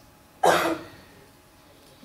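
A single short cough about half a second in, close to the microphone and as loud as the speech around it.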